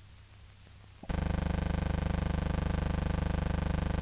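Faint hiss from an old newsreel soundtrack, then about a second in a loud, steady buzzing hum made of several fixed tones sets in and holds without change.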